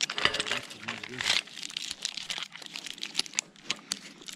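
Climbing rope and hardware rustling and scraping against tree bark as a climber handles the rope, with a brief wordless voice sound in the first second or so.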